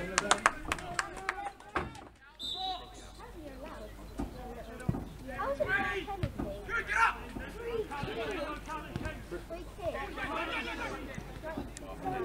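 Players shouting to one another across an outdoor football pitch, the voices carrying from a distance, with an occasional knock of a ball being kicked. In the first second or so there is a quick run of sharp claps.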